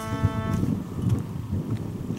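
Background music with held notes that ends about half a second in, then wind buffeting the microphone in an uneven low rumble.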